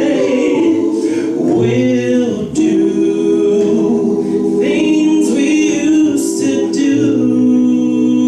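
A six-man a cappella vocal group singing close harmony through microphones, holding sustained chords, with a short break about two and a half seconds in before the chord resumes.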